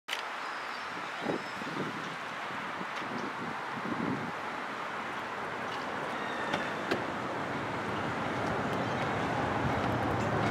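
Steady outdoor rumble and hiss of a distant approaching passenger train, growing slowly louder, with a few faint clicks.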